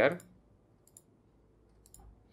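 A few faint computer mouse clicks, about a second in and again near the end, after a man's speech ends at the very start.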